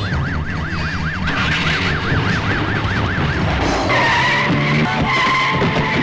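Police siren yelping in fast rises and falls, about three and a half a second, over a film score. About four seconds in it gives way to a steady high squeal.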